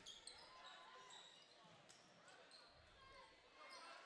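Faint gym sound of a basketball game: a basketball bouncing on the hardwood court, a few short high squeaks, and a low murmur of the crowd.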